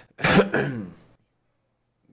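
A man clearing his throat once, a short rough vocal burst lasting under a second.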